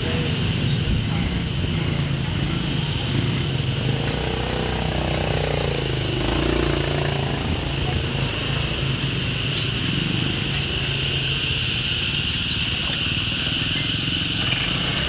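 Steady street traffic dominated by motorbike engines, heard from an open cyclo (pedicab) moving along the road. A vehicle passes close by about halfway through, its sound sweeping down and back up in pitch as it goes past.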